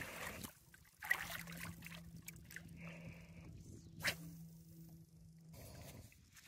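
Water splashing against the side of a boat as a jack crevalle is held in the water and released, with two sharper splashes, about a second in and about four seconds in. A faint steady hum runs underneath.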